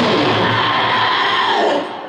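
Black metal band ending a song live: the guitars ring out under a long high shriek from the vocalist that bends down in pitch and breaks off near the end, as the sound drops away.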